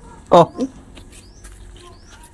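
Faint, short, high chirps, each rising in pitch, repeating about twice a second. A voice's short "oh" about a third of a second in is the loudest sound.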